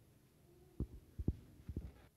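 Five or so soft low thuds, bunched in the second half, over a faint steady hum.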